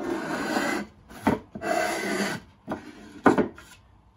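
A small block plane shaving wood off a drum shell's bearing edge in repeated strokes, taking down high spots to true the edge. Two longer strokes of under a second each are followed by shorter, sharper scrapes, the sharpest about three seconds in.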